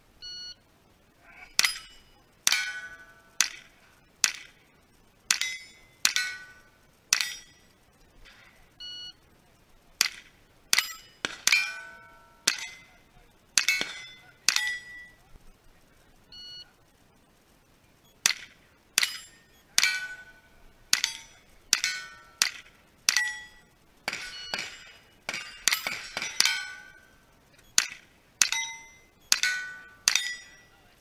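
Rifle shots at steel targets, each followed by the ringing clang of a steel plate being hit, coming about once a second with a pause of a few seconds midway. A short electronic shot-timer beep sounds near the start.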